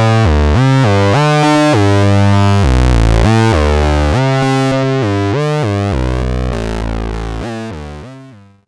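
Analogue synthesizer oscillator playing a stepped sequence of notes, its pulse wave under pulse-width modulation mixed with saw waves and saturated by a tube (valve) mixer into a thick, fuzzy tone, its harmonics slowly sweeping. It fades out near the end.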